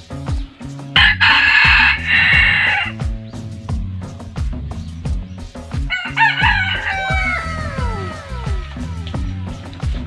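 Red junglefowl rooster crowing once, a harsh two-second call about a second in, over background music with a steady beat.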